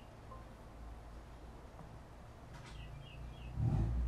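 Quiet room tone: a low steady hum, with a few faint, short high chirps about two and a half seconds in.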